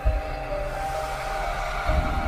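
Dramatic outro music with long held notes, punctuated by deep booms at the start and again near the end.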